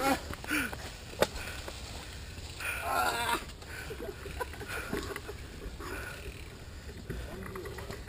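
Mountain bike riding over a dirt forest trail: a steady low rumble of tyres and bike rattle, with a sharp knock about a second in. Brief voices call out near the start and again around three seconds in.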